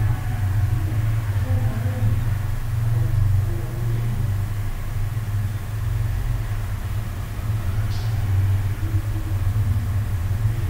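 Steady low rumble with faint, indistinct sounds above it and a brief high tick near the end.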